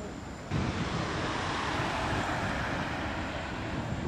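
Outdoor street noise with road traffic, a steady rush that jumps louder about half a second in and swells through the middle.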